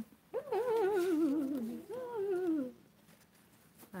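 Two long, wavering vocal calls, each sliding down in pitch, the second shorter, in the first two-thirds.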